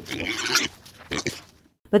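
Pig grunting in two short bursts, a long one at the start and a brief one about a second in: a comic pig sound effect.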